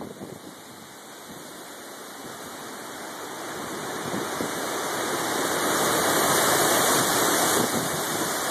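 Strong storm wind gusting through a large tree's leaves and branches, a steady rushing that grows louder for about six seconds and then holds.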